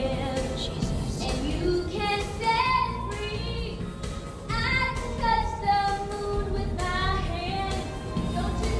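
A woman singing into a microphone over instrumental accompaniment, holding long notes with a wavering pitch.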